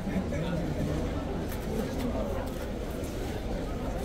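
Indistinct chatter of several people's voices over a steady low background rumble, with a few faint clicks between one and two seconds in.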